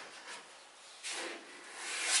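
A hand rubbing faintly over the metal skin of a VW bay-window camper's rear hatch, a soft brushing that is a little louder about a second in.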